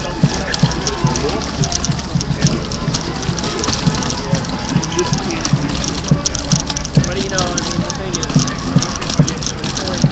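Indistinct voices of a crowd in the street over a steady wash of city noise, with frequent irregular dull thumps close to the microphone.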